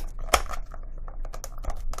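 Clear plastic clamshell packaging clicking and crackling as it is handled and turned over in the hands, with one sharper click about a third of a second in.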